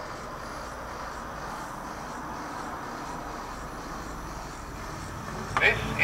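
Battery-powered motor and plastic gear drive of a 3D solar system model whirring steadily as it turns the planet arms around the central sun.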